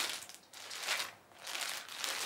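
Clear plastic garment bag crinkling as it is handled, in three short rustles separated by brief pauses.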